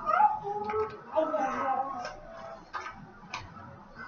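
High-pitched whimpering whine that rises in pitch at the start, followed by softer voices and a couple of faint clicks.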